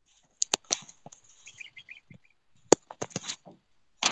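A scattering of sharp clicks and knocks picked up by an open microphone, the loudest near the end, with a short run of faint high chirps in the middle.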